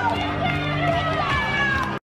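Loud dance-club music with a singing voice gliding over a steady bass line, among crowd voices; the sound cuts off suddenly at the end.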